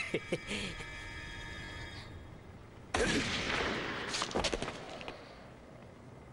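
A steady electronic tone for the first two seconds, then a sudden gunshot about three seconds in, followed by a noisy tail with a few sharp cracks that fades over about two seconds.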